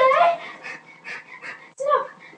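High-pitched yelping and whining cries with gliding pitch. They are loudest in the first half second, fainter and shorter in between, and rise again in a sharp cry near the end.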